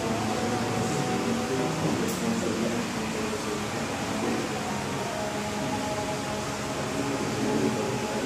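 Steady hum of a room fan or air conditioner, with faint, indistinct voices murmuring underneath.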